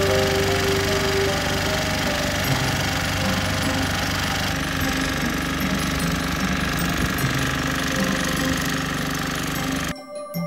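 A powered breaker hammering continuously with a fast, even rattle; it cuts off abruptly near the end.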